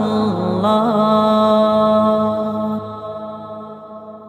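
Male voice singing the long closing note of an Islamic naat over a steady low drone. The pitch bends in the first second, then holds steady, and the sound fades out from about three seconds in.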